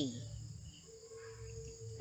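Faint background noise in a pause between spoken phrases: a low hum, joined about halfway through by a thin steady tone.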